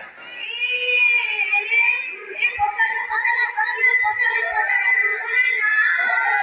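High women's voices singing a Bihu song over a PA, with no steady drumming and only a few soft low thumps.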